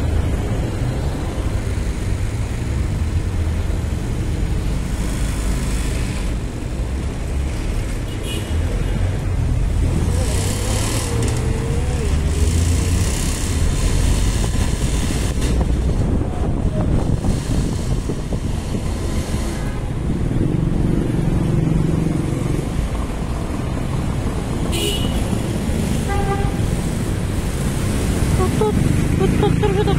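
City street traffic heard from the open back of a slow-moving pickup truck: a steady rumble of engines and road noise, with a motorcycle close ahead. A short horn toot sounds near the end.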